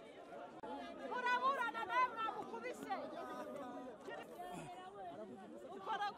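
People talking, several voices mixing in chatter, starting about half a second in.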